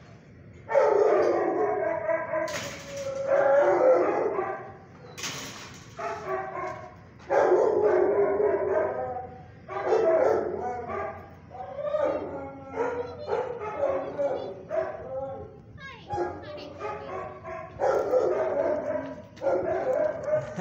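A dog barking and howling over and over in drawn-out pitched calls, starting about a second in and going on in runs with short breaks.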